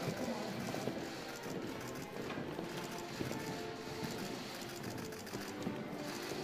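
Footsteps of a procession walking across a parquet floor, hard heels clicking, over music and a murmur of voices.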